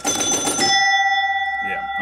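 Electromechanical pinball machine (1965 Gottlieb Bank-a-Ball) scoring after a switch is hit by hand: a brief clatter of relays with a chime ringing, then about half a second in a second, lower chime is struck and rings on, slowly fading.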